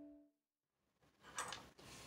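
Background acoustic guitar music fading out, then near silence broken by a faint, brief noise about one and a half seconds in.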